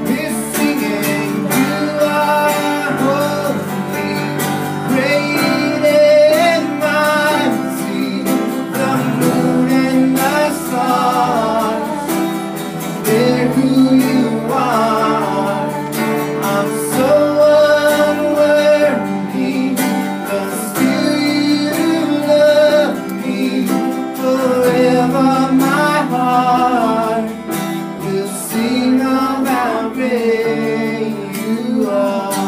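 Live worship song: acoustic guitar strummed with bass guitar under it and voices singing the melody.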